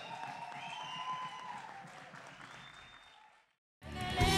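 Audience applause and cheering, fading away over the last couple of seconds and cutting to silence just before music starts at the very end.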